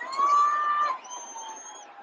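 Arena concert crowd noise with a loud, held, high-pitched vocal note for about the first second, then a thin, shrill whistle that stops shortly before the end.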